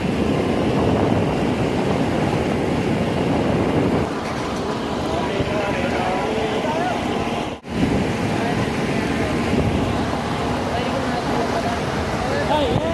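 Jeep driving along a rough mountain dirt road, heard from the open back: steady engine and road noise with wind on the microphone, and faint voices of passengers underneath. The sound cuts out for a split second about seven and a half seconds in.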